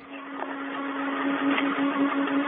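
Open space-to-ground radio channel: a steady hiss with one constant low hum, thin and band-limited like a radio link, swelling slightly.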